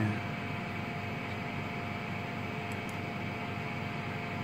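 Steady background hum and hiss of running machinery, with a faint steady tone running through it and no changes.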